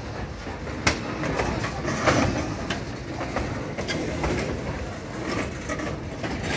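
Railway tank cars rolling past on the rails: a steady rumble of steel wheels, with clicks and clunks over the rail joints and a sharp knock about a second in and another about two seconds in.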